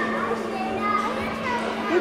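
Background chatter of children's voices, with a steady low hum underneath.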